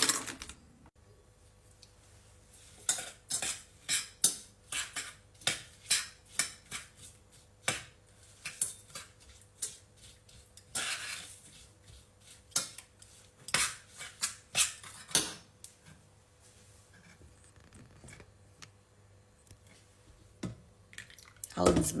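A metal spoon clinking and scraping against a stainless steel saucepan while stirring chopped strawberries and sugar: a run of sharp, irregular clinks that starts a few seconds in and dies away about two-thirds of the way through.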